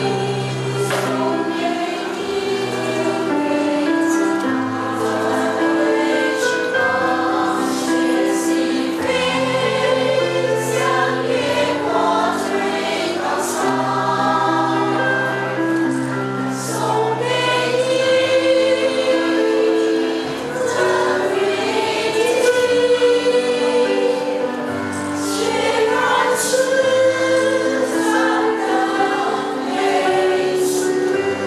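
Women's choir singing in several parts.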